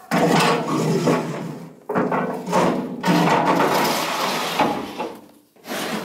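Aluminium loading ramp of a U-Haul box truck sliding back into its stowage slot under the cargo deck: metal scraping and rattling in three long pushes, quieting a little before the end.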